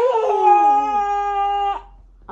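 A young child's long, steady-pitched playful squeal, held for nearly two seconds before cutting off, with a lower voice gliding down in pitch beneath it in the first second.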